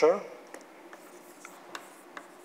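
Chalk writing on a blackboard: faint scratching with several short, sharp taps as the chalk strikes and lifts off the board.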